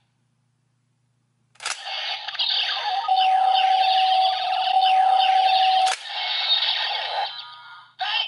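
DX Ghost Driver toy belt playing electronic music and sound effects through its small speaker, with sweeping glides and a long held tone. It starts with a sharp plastic click about a second and a half in, another click comes about six seconds in, and the sound fades out near the end.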